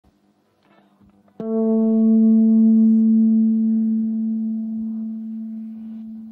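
A single note plucked on an electric guitar about a second and a half in, after a few faint handling clicks. The note rings on steadily and fades slowly.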